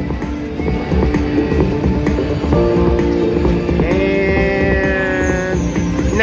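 Lock It Link video slot machine playing its bonus music, held electronic notes over a steady low beat, with a brighter run of higher tones about four seconds in.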